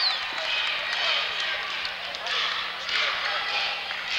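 Basketball game sounds in a gymnasium: a ball bouncing on the hardwood court and sneakers squeaking under a steady murmur of crowd voices.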